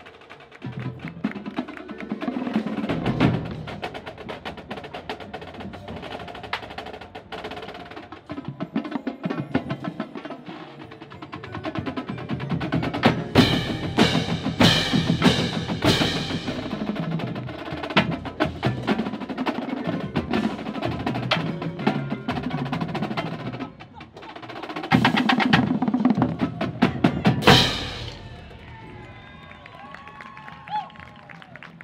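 A marching cymbal line playing pairs of hand crash cymbals in a fast rhythmic routine with a drumline's snare drums: quick taps and chokes, building to two loud stretches of full crashes, one about halfway through and one near the end, before the playing cuts off.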